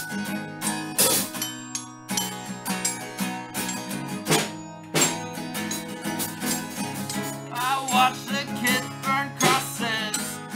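A small amateur band playing live: electric guitar chords held over drum hits. A voice comes in over the music in the last few seconds.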